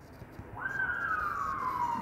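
A single high wailing tone that rises quickly about half a second in, then falls slowly and steadily in pitch.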